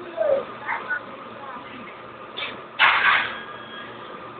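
A child's voice making short, wordless sounds, with a louder noisy rush about three seconds in.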